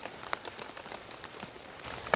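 Scattered small crackles and rustles of twigs, leaf litter and soil on a forest floor as someone moves across it and crouches, over a faint steady hiss.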